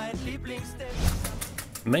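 Background music; a voice starts speaking near the end.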